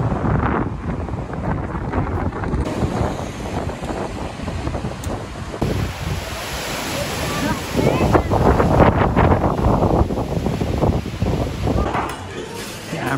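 Wind buffeting the microphone, with rushing white water pouring over a river weir in the later part.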